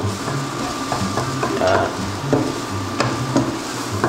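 Scrambled eggs sizzling in a non-stick frying pan while being stirred and scraped with a plastic slotted spatula, with scattered clicks and scrapes of the spatula against the pan over a steady low hum.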